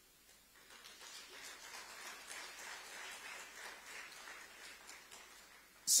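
Faint audience applause: a hall full of clapping that starts about half a second in, holds for a few seconds and dies away near the end.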